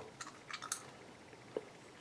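Faint chewing of a freeze-dried cranberry, with a few soft, short crunches.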